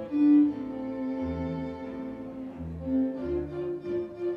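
A small chamber string ensemble of violins, cello and double bass plays held, legato notes. Low bass notes come in several times in the second half.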